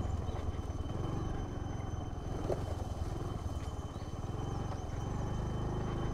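Motor scooter's small engine running steadily during a ride, a fast even pulsing hum with no revving.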